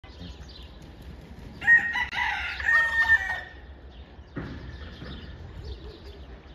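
A rooster crowing once, starting a little over a second and a half in and lasting under two seconds, with faint bird calls around it.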